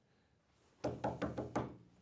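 A hand knocking several times in quick succession, starting about a second in, the first knock the loudest: a mimed knock at a door asking to be let in.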